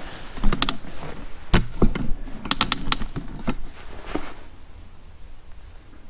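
Straw bedding crackling and clicking close to the microphone in irregular bursts, with a quick cluster about halfway through, then going quieter for the last second or two.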